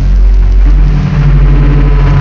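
Dark midtempo electronic music: deep, sustained synth bass over heavy sub-bass, with the high end filtered away. The bass note steps to a new pitch just over half a second in.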